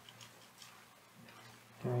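Faint computer keyboard clicks as code is typed: a few light, irregular taps in the first half, over a low steady hum.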